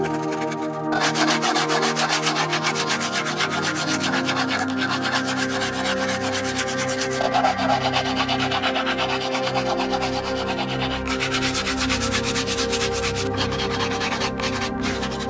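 Hand sanding of a hardwood slingshot handle with sandpaper on a flat stick, rubbed back and forth in quick, steady strokes that start about a second in.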